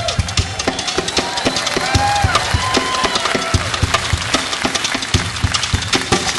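Solo steel-string acoustic guitar played fingerstyle with hard percussive strikes on the strings and body, giving a driving drum-like beat under the melody.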